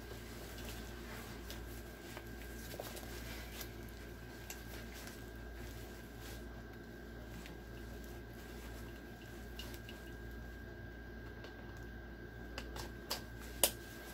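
Faint rustling and shuffling of a nylon plate carrier being pulled on and adjusted, with a few short clicks near the end as the cummerbund's quick-release buckles are fastened.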